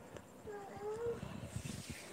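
A faint, wavering animal call, heard once about half a second in, over low background noise.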